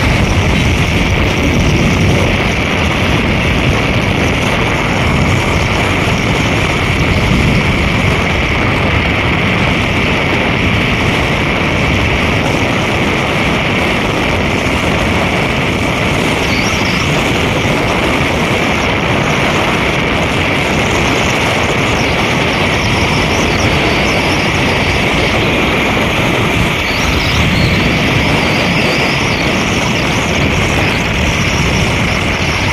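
Steady, loud rush of wind and road noise from travelling at speed along a highway, with surrounding traffic.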